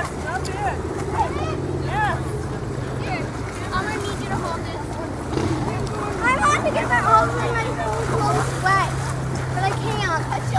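A motor running steadily at a low pitch, with several people's voices talking indistinctly over it; the voices get busier in the second half.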